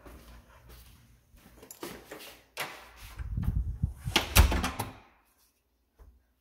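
Clunks and knocks building to a loud thud about four seconds in, like an interior door being shut; the sound then cuts off abruptly.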